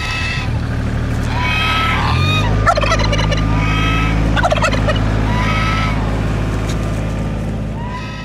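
A displaying tom turkey gobbling in rapid warbling bursts among domestic geese giving repeated short honks, about one call every second or so. A steady low hum sets in a little over two seconds in and runs underneath.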